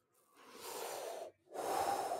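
A man breathing audibly into a close microphone, two long breaths in a row, with no voice in them, as he thinks over his answer.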